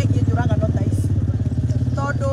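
An engine running close by: a steady low drone with rapid, even pulses.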